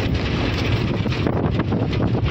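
Wind buffeting the microphone over a steady low road rumble, heard from inside the open cargo body of a moving truck.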